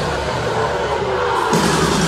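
Live rock band music played through a concert sound system, thinning out briefly and coming back in at full strength about a second and a half in.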